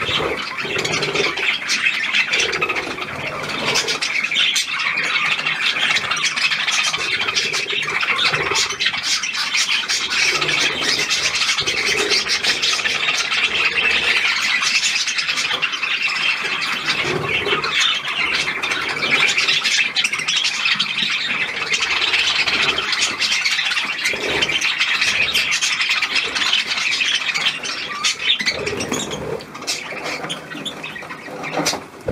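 A flock of budgerigars chattering and squawking, many birds calling at once in a dense, unbroken warble.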